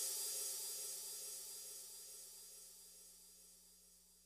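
The final cymbal crash of a dubstep track ringing out with its reverb tail, fading steadily away to silence.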